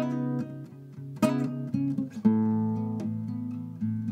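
Classical nylon-string acoustic guitar played fingerstyle: a few plucked chords, about a second apart, each left to ring.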